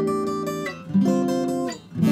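Acoustic guitar playing chords, each left to ring, with a new chord struck about a second in, recorded through a Deity V-Mic D3 Pro shotgun microphone.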